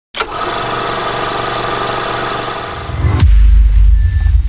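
Channel logo-intro sound effect: a loud steady sound of many stacked tones that drops in pitch at about three seconds into a deep low boom, which carries on to the end.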